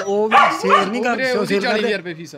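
A dog howling and whining in long calls whose pitch wavers up and down.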